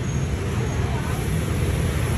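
Steady low rumble of background street traffic, with no single event standing out.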